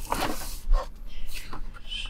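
Pages of a hardcover book being turned by hand, the stiff endpapers and paper rustling and sliding, with a few light taps and brushes.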